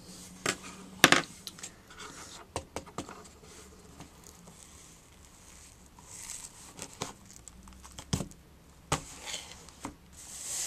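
Scattered sharp taps and crinkly rustling of hands handling notebook paper, a small plastic pencil sharpener and loose pencil shavings; the loudest tap comes about a second in.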